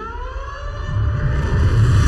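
Film-trailer sound design: a siren-like wail rising in pitch, then a low rumble that builds and grows louder about a second in.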